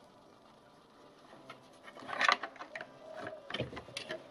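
Handling knocks and light rattles as the opened reel-to-reel tape recorder, its metal deck plate in a plastic case, is turned over and set down. The sharpest knocks come about two seconds in, after a quiet first second and a half, followed by a few smaller clicks.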